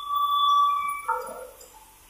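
A sawmill log carriage squealing on its rails as it is pushed: a steady high-pitched metal squeal that breaks about a second in into lower, wavering tones, then dies away.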